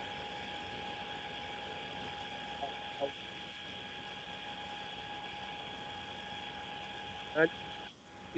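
Steady electrical hum and hiss from an open microphone on an online call, with a thin high whine over it. A faint voice comes through briefly about three seconds in and again near the end.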